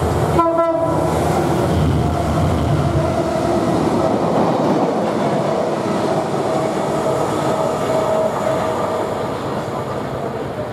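Class 68 diesel locomotive with its Caterpillar V16 engine passing close, its deep drone fading over the first three seconds, with a short horn blast about half a second in. Then the wagons of the train roll past, the wheels rumbling with a steady whine as the train draws away and slowly quietens.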